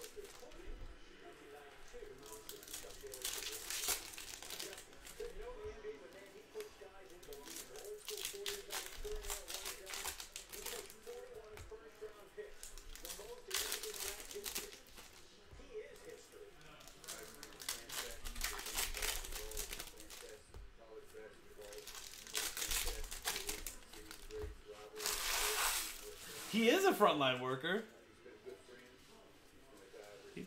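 Foil trading-card pack wrappers crinkling and tearing as packs are opened and handled, in repeated irregular bursts of a second or two. A brief voice sound near the end is the loudest moment.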